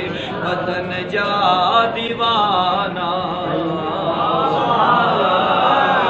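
Unaccompanied male chanting of a Sindhi devotional manqabat, held on long, wavering sung notes.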